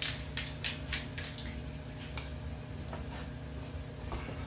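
Small hard parts clicking and clinking as they are handled, several quick clicks in the first second and a few scattered ones after, over a steady low hum.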